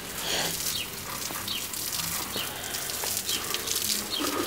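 Garden hose spraying water onto garden plants: a steady hiss of spray with water pattering on leaves, and a few short bird chirps over it.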